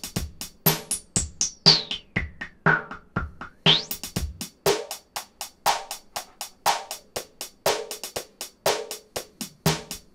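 Sampled drum loop of kick, snare and hi-hat playing from a Teenage Engineering OP-Z sequencer. About a second in, the filter is swept down, muffling the beat over a few seconds, then snapped back open near four seconds in.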